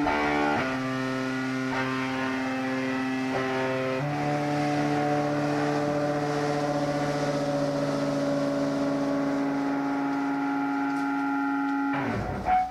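Live rock band's closing drone: electric guitars and bass hold long sustained chords that shift pitch about half a second and again about four seconds in, then cut off sharply at the end.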